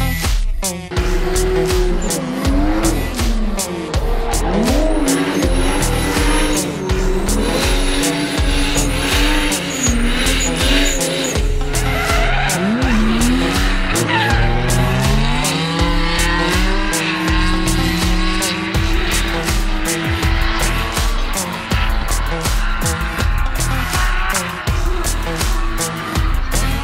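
Drift cars' engines revving up and down through slides, with tyres squealing, over background music with a steady beat.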